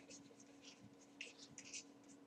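Faint scratching of a stylus writing on a tablet, a series of short strokes, over a low steady hum.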